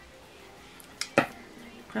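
Makeup items being handled: two sharp clicks about a second in, the second much louder, as a brush and a hard heart-shaped compact knock together or are set down. Faint background music plays before them, and a woman's voice begins at the very end.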